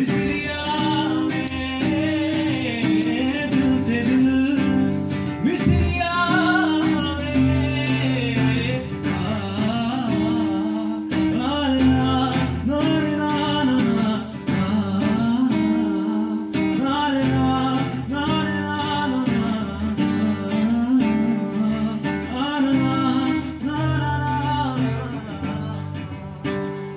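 Acoustic guitar strumming chords while a voice sings a winding, ornamented melody over it.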